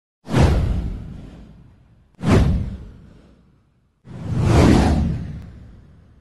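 Three whoosh sound effects for an animated news title card. The first two start sharply and fade over about a second and a half; the third swells in more slowly near the end.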